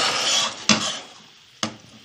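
Stainless steel pan of melting sugar being shifted and swirled on a gas-stove grate: a short scraping rush, then two sharp metal knocks about a second apart, over the faint bubbling of the sugar as it turns to caramel.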